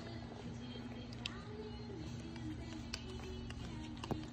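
Faint children's song playing from a TV, with a held note under a slow melody, and a few light clicks over it.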